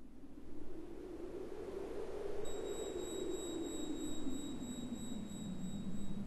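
Electronic intro sound design: a noise swell whose pitch slowly sinks. About two and a half seconds in, thin steady high tones enter with a light ticking of about three to four ticks a second.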